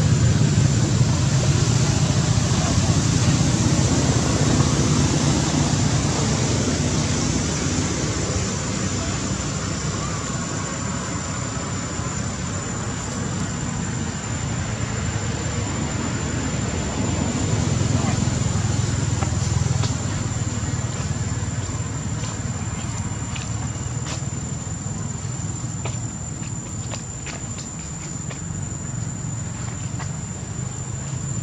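Steady outdoor background noise: a low rumble with a constant thin high-pitched whine over it, and a few faint clicks in the second half.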